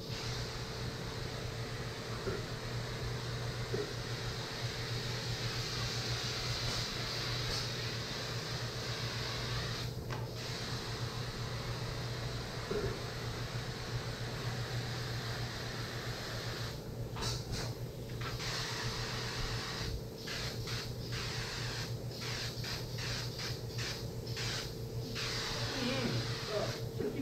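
Compressed air hissing steadily from a hose-fed air tool. It cuts out briefly about ten seconds in, then stops and starts several times in the last third, over a steady low machine hum.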